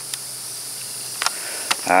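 Steady high-pitched chorus of insects, with a faint low hum and a few light clicks.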